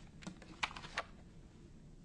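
Sheets of paper being gathered up and handled, a few crisp rustles and clicks in the first second, then quiet room tone.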